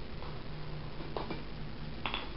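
Faint light scrapes and clicks of a hand tool working at a plastic enclosure lid, a couple of times, over a steady background hiss and low hum.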